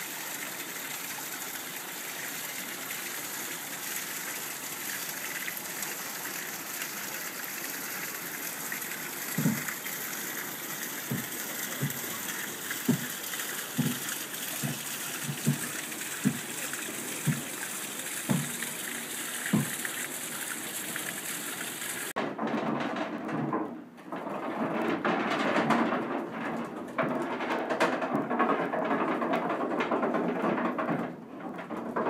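Water rushing steadily along a wooden flume and splashing onto the buckets of an overshot waterwheel. Midway comes a run of about ten low knocks, roughly one a second. About two-thirds of the way in, the sound cuts abruptly to a louder, uneven rumble of the grist mill's gearing turning inside the mill.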